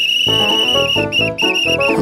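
A whistle blown: one long high blast, then three short blasts in quick succession.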